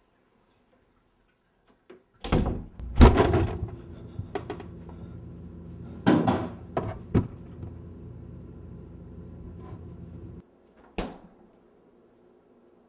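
Refrigerator door being pulled open and pushed shut, with several clunks and knocks, the loudest about three seconds in; a steady low hum runs under them and cuts off suddenly, and a last thud comes near the end.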